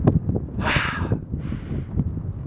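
Wind buffeting the microphone in a steady low rumble, with a short hiss a little over half a second in.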